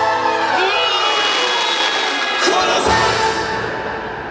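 Dramatic orchestral and choral show music over loudspeakers, swelling with rising sweeps about half a second in. About two and a half seconds in come a few sharp bursts with a deep thud as flame effects fire beside the castle, and then the music fades.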